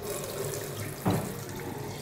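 Kitchen tap running steadily into a stainless steel sink, the stream of water splashing into the bowl around a rubber plunger cup.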